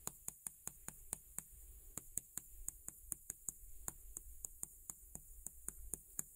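Faint chalk taps and clicks on a chalkboard as words are written, several a second at an uneven pace.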